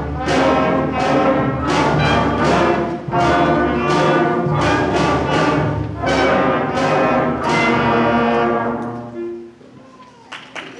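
Fifth-grade beginning concert band of flutes, clarinets, saxophones and brass playing accented chords on a steady beat, ending on a long held chord that dies away about nine seconds in.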